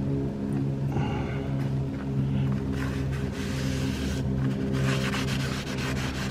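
A steady low hum from a running motor, even and unchanging throughout.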